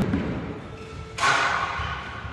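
A skateboard hits the wooden halfpipe with a hollow thump right at the start, ringing on in a large hall. About a second later comes a shorter rush of noise as the board rolls.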